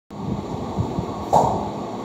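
Room noise with a low rumble, cutting in abruptly from silence as a recording begins, with one brief louder sound a little over a second in.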